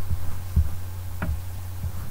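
A steady low hum with four soft, irregularly spaced low thumps over it.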